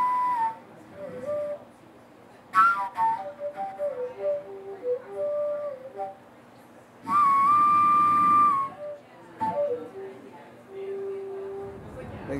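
A man performing the start of a song alone into a microphone: a slow melody of separate high notes that slide between pitches, with a long, loud held note about two-thirds of the way through and no accompaniment.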